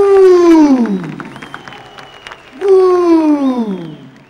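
A drawn-out vocal "ooh" from the DJ's turntable set, sliding down in pitch over about a second, heard twice with the second starting about two and a half seconds in. Applause from the audience runs underneath, with a thin high whistle between the two.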